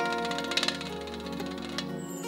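Live manele band music in an instrumental passage between sung lines: held melody notes over the accompaniment, with a few quick clicks about half a second in.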